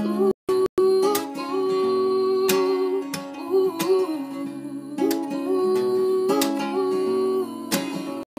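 A woman singing long held, gliding notes over her own strummed acoustic guitar chords in a slow folk song. The sound cuts out completely twice, briefly, a little under a second in.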